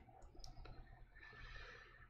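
Near silence: room tone, with a few faint clicks about half a second in.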